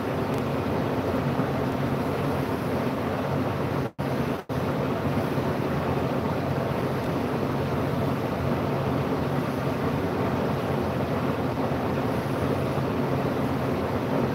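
A steady droning hum with an even rushing noise, like a running machine. The sound cuts out for an instant twice about four seconds in.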